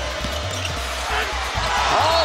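Basketball game sound in an arena: a ball bouncing on the hardwood over steady crowd noise, with low music underneath. The crowd swells near the end as a shot is blocked.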